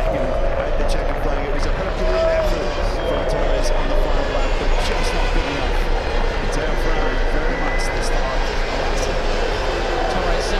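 Ducati V21L electric race motorcycles riding slowly past, their motors giving a steady whine that wavers slightly in pitch.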